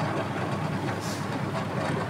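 Abdullah AE900A dough kneader running steadily, its electric motor turning the metal kneading blade in the stainless steel bowl: an even low hum.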